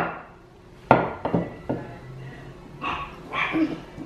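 Three quick knocks on a wooden tabletop about a second in, with fainter short sounds near the end.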